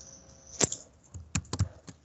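Computer keyboard typing: a handful of irregular keystrokes, the first, about half a second in, the loudest.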